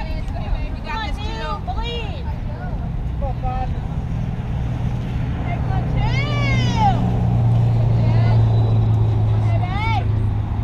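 Voices shouting and calling out across a softball field, with one long rising-and-falling call about six seconds in, over a steady low rumble that grows louder in the second half.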